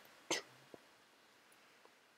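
A short breathy exhale or whispered sound from a person about a third of a second in, followed by a faint click and then quiet room tone.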